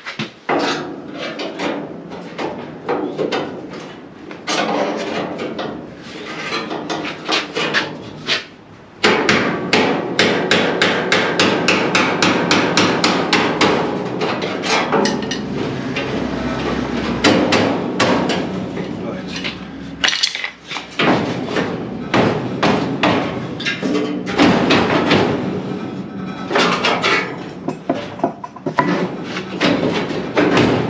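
Hammer blows on a spot weld chisel being driven through the spot welds of a steel car body's chassis rail, sharp metal-on-metal strikes. A few scattered blows come first. From about nine seconds in there is a fast run of several strikes a second, which breaks off briefly around twenty seconds and resumes in shorter bursts.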